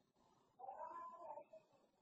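A faint animal cry, under a second long, starting about half a second in.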